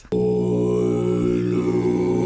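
A man's voice holding one low, unwavering note, a long chant-like 'aaah' that starts suddenly and stays steady.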